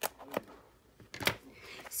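A few sharp clicks and taps of a stiff clear plastic pillow box being handled and turned over, two close together past the middle.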